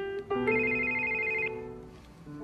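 Mobile phone ringtone playing a simple melody of held electronic notes, stopping as the phone is answered.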